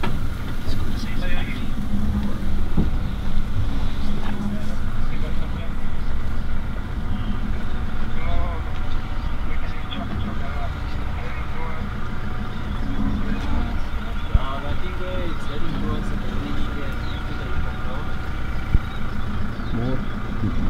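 A vehicle engine idling steadily, with quiet voices now and then.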